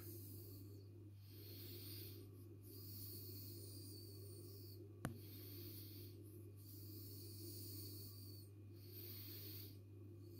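Very faint steady low hum, with a soft hiss that swells and fades every second or two, and a single sharp click about five seconds in.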